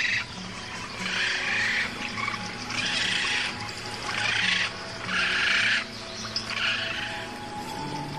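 Background music with low sustained notes, over which come six harsh, raspy bird calls, each under a second long, about one every second and a half.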